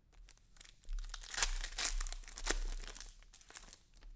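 Trading cards being handled and flipped through by hand, a run of crinkly rustles and small clicks from about a second in until near the end.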